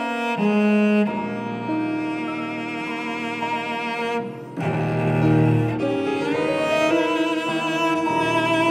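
A string ensemble playing a slow classical piece, with a cello prominent in sustained bowed notes. A little past halfway the sound briefly drops away, then a strong low note comes in.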